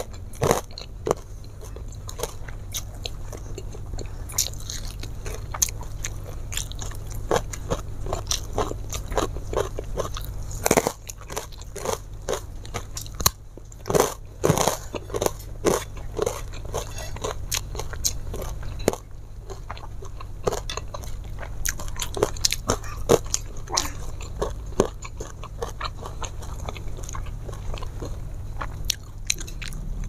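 Close-miked eating: a person chewing and biting crunchy food, with many irregular crunches and wet mouth clicks, over a steady low hum.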